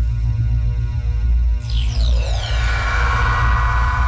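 Logo intro music: a loud, deep bass drone under held chord tones, with a shimmering high sweep gliding downward about two seconds in.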